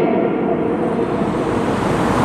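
Steady rushing background noise with no voice in it.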